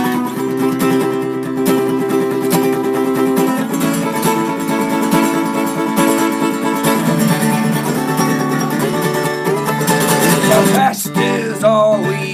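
Steel-string acoustic guitar strummed in a steady rhythm, an instrumental break between sung lines of a folk-rock song.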